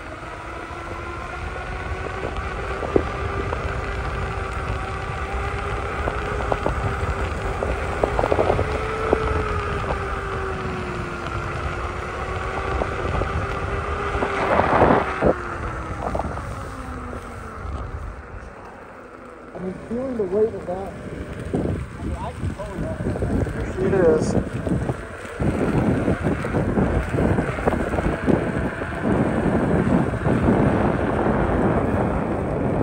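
Electric unicycle hub motor whining as it rides along, its pitch wavering with speed and then falling away about seventeen seconds in. Wind buffets the microphone, and a low road rumble runs underneath.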